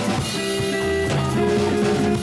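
Live band playing: electric guitar over a drum kit, with bass underneath, in a steady groove.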